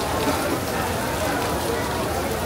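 Steady rain falling on wet paving and a glass canopy, with people's voices in the background.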